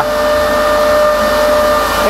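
An 11 kW rotary hay cutter running at speed, grinding hay to grass meal: a steady whine made of several held tones over a rushing air noise. It comes from the rotor spinning at about 3000 rpm and the aerodynamics of its knives, which is normal for this machine and not a sign of a fault.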